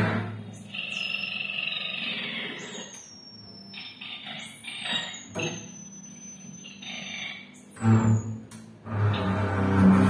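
Free-improvised music for double bass and two guitars: sparse, noisy textures with thin high gliding tones and scratchy bursts in the middle, then low double bass notes sounding strongly from about eight seconds in.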